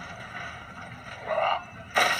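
Outdoor dockside ambience from a TV scene: a steady background noise, with a short louder sound about one and a half seconds in and a sudden loud sound at the very end.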